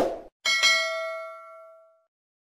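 Notification-bell ding sound effect from a subscribe-button animation. About half a second in, a bright strike rings with several tones at once and fades out over about a second and a half, after the tail of a short sound at the very start.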